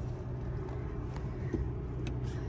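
A Toyota Tacoma's V6 engine idling, a steady low hum heard from inside the cab, with a couple of faint clicks.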